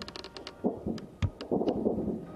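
Distant small-arms gunfire: an irregular string of sharp cracks with several dull, low thumps among them.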